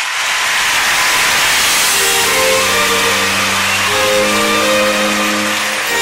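Show soundtrack: a loud rushing noise starts suddenly, and about two seconds in, held string chords come in beneath it.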